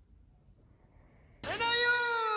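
Near silence, then about one and a half seconds in a loud animal-like call starts, holding its pitch briefly before sliding steadily down.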